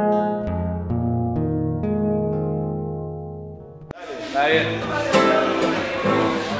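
Digital piano playing a slow phrase of single notes over held low notes, fading out about four seconds in. After an abrupt cut, an acoustic guitar strums and a voice calls out "Ah".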